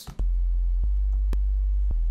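Sub bass from the Xfer Serum synthesizer, a pure sine wave, holding one steady, very deep note that starts a moment in. A few faint ticks sound over it.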